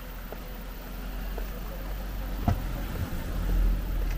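A small car driving slowly toward the listener, its engine and tyre rumble growing steadily louder and loudest near the end. A single sharp click sounds a little past halfway.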